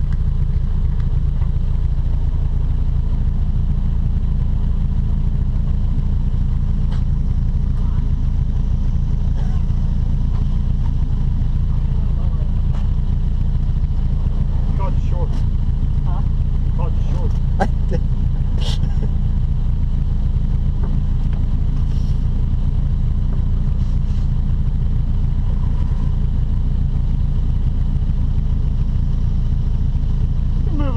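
Mazda Miata's four-cylinder engine idling steadily, heard from inside the open cabin. A few short squeaks and clicks come around the middle, while tape is being worked across the windshield.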